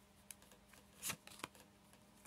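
Faint handling of oracle cards as one is drawn from the deck: a few soft card ticks and a brief slide of card against card just after a second in.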